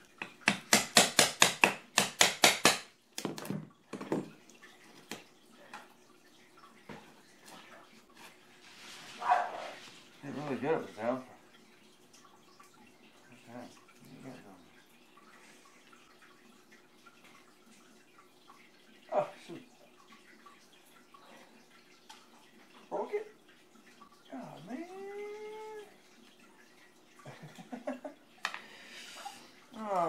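A hammer striking a scraper blade to chip up old kitchen floor tile: a quick run of strikes, about four or five a second, in the first three seconds, then only scattered light knocks and scraping.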